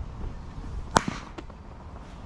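A cricket bat hits a leather ball in the nets with one sharp crack about a second in, followed by two fainter knocks.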